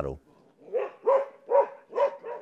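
A dog barking in a quick, regular series of short barks, about two a second, starting just under a second in.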